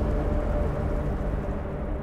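Closing soundtrack of a film trailer: a deep rumble under a few faint, steady held tones, slowly fading out.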